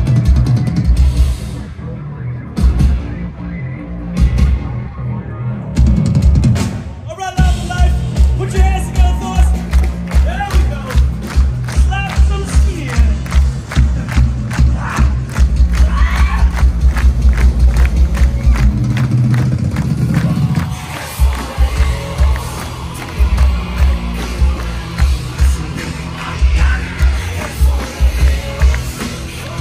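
A live band playing loud through a festival PA, with a pounding kick drum and vocals over it. The music drops out briefly about seven seconds in, then comes back in with a faster, denser beat that thins out again after about twenty seconds.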